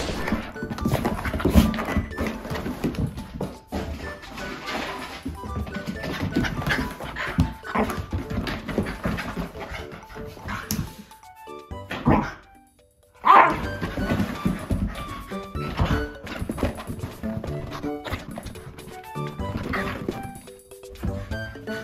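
Background music over a Shiba Inu playing wildly: scrambling, thuds and pawing on a rug, with dog noises. The sound cuts out briefly about twelve seconds in.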